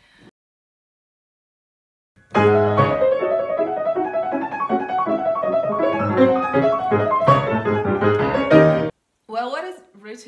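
Grand piano played by hand: a quick passage of many notes that starts about two seconds in after dead silence and cuts off abruptly about a second before the end.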